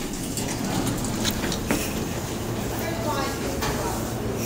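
Hydraulic elevator running: a steady rumble with a low hum inside the cab, and a single click a little under two seconds in.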